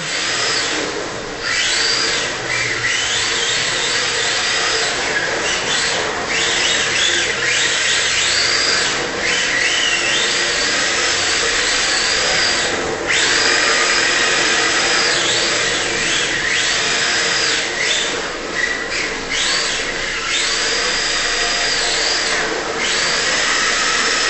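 Electric motor of a Tamiya TT-01D radio-controlled drift car whining. Its pitch sweeps up, holds and drops again every couple of seconds as the throttle is worked through drifts, over a steady hiss.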